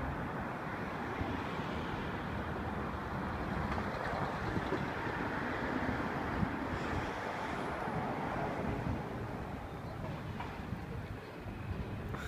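Steady city street noise: passing road traffic with people's voices in the background.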